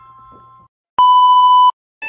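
The tail of a fading electronic chime, then a moment of silence, then a loud, steady electronic censor-style bleep lasting under a second, added in the edit.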